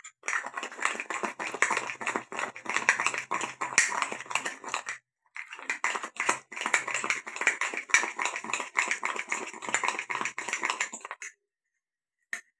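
Metal spoon beating coffee paste in a ceramic mug: a fast, continuous run of clicks and scrapes against the cup. It pauses briefly about five seconds in and stops about a second before the end.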